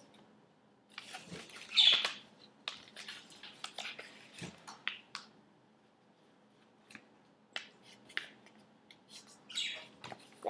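Pet budgerigars chirping in the room, short scattered calls with the strongest about two seconds in, mixed with the rustle and crease of a paper sheet being folded by hand.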